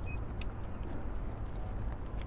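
Steady low rumble of city road traffic in the background, with a couple of faint ticks.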